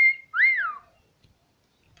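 Two whistled notes. The first is a short held note that stops just after the start, and the second rises and falls in pitch and ends before the first second is out.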